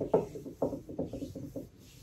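A hand rubbing the bare skin of an arm just bumped on an open drawer: a quick run of short, soft rubbing strokes that die away near the end.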